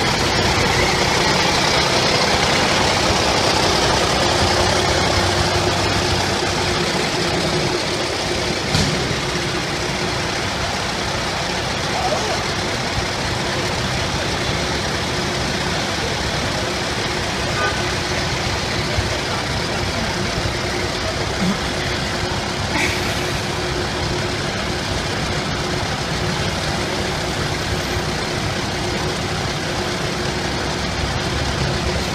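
A USMC six-wheel cargo truck's diesel engine idling and creeping forward, with Humvee engines behind it: a steady engine drone with a constant low hum. It is a little louder in the first few seconds as the truck passes close.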